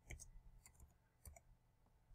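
Faint clicks of computer keyboard keys as a file name is typed, a few irregularly spaced keystrokes.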